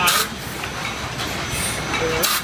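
Automated wine bottling line running at the foil capsule applicator: steady mechanical clatter as bottles move through, with one short, sharp hiss right at the start.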